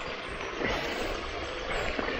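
Shallow mountain stream running over rocks right underfoot: a steady rushing hiss of water.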